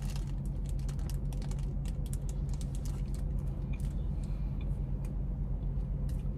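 Biting into a MoonPie and chewing, with its plastic wrapper crackling in the hands, over the steady low hum of a car idling. The clicks and crackles are thickest in the first few seconds.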